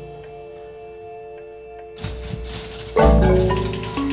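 Robotic marimba with mechanically driven mallets playing. Held tones fade quietly for about two seconds. A low thud and a few strikes follow, then a loud, quick run of many struck notes over a deep low part near the end.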